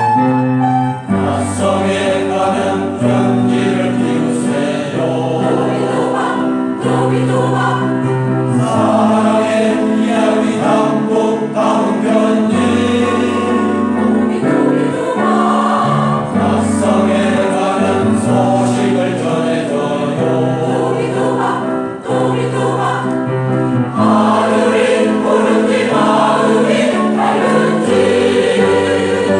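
Mixed choir of older men and women singing together in sustained, changing chords, the voices coming in fully about a second in.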